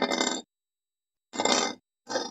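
Loose plastic Lego bricks clattering as a hand rummages through them, in two short bursts of clinking: one at the start and one a little over a second in.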